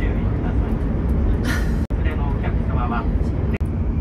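Steady low rumble of a Shinkansen bullet train cabin in motion, with people talking over it. The sound cuts out briefly twice.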